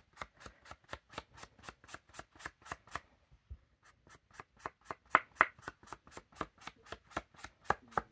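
Ink blending tool's sponge head dabbed rapidly against an ink pad and the edges of a paper card, about five short taps a second, with a brief pause about three seconds in: distressing the card's edges with ink.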